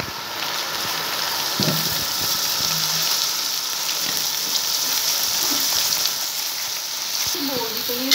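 Water at a rolling boil in an aluminium pot, a steady hissing and bubbling; dry macaroni is tipped into it about halfway through.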